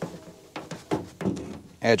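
A cheap siphon-feed soda blaster being jostled to agitate its baking-soda media, which clogs without it: a quick run of light knocks and rattles.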